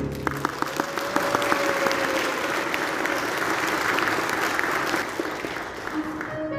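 Audience applauding, a dense patter of clapping that breaks out as the soprano's song with piano ends.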